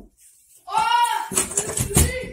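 A child's high-pitched wordless cry, rising then falling, starting about half a second in. It is followed by low rumbling handling noise and a thump at the very end.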